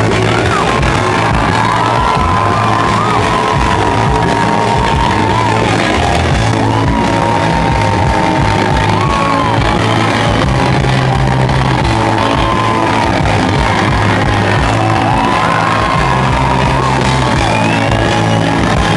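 Live rock band playing loudly, heard from within the crowd on a rough recording. A long high held note runs over the band, bending up and down in pitch every few seconds, and the crowd whoops and yells.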